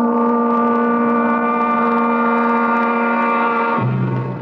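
A dramatic music sting closing the act: one sustained chord of several notes held at a steady pitch and loudness, cutting off abruptly near the end.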